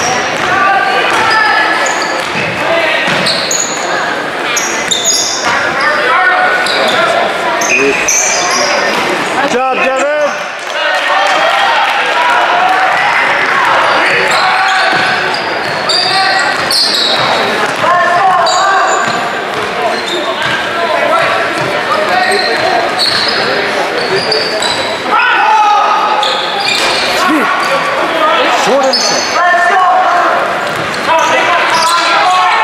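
Basketball being dribbled on a hardwood gym floor during live play, with indistinct shouting from players and spectators echoing around a large gym. Short high sneaker squeaks are scattered throughout.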